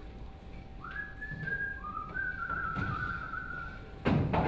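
A person whistling a short phrase of a few held notes, starting about a second in, with a few soft thumps underneath.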